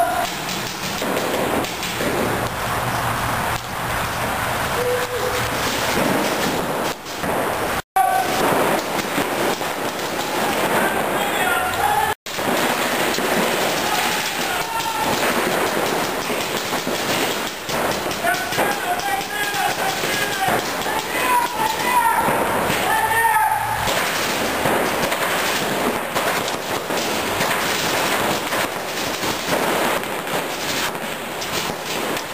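Paintball markers firing rapid strings of pops during a game, with players shouting. The sound cuts out completely twice for an instant in the first half.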